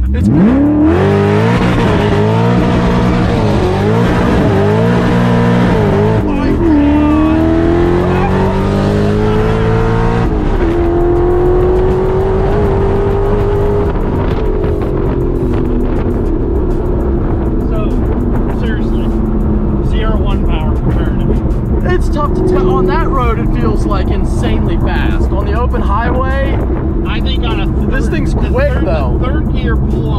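Whipple-supercharged Ford GT V8 accelerating hard from inside the cabin. The engine pitch shoots up at the start and rises and dips several times over the first few seconds. It drops and climbs again with upshifts around seven and ten seconds in, then settles into a steady cruise with the revs easing slowly down.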